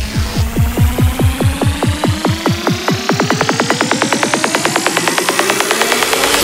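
Psytrance remix build-up: a synth riser climbs steadily in pitch over a repeated drum hit that speeds up from about four to about ten strokes a second.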